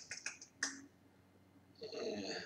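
A quick run of soft mouth clicks, tongue and lips smacking during a thinking pause, bunched in the first second.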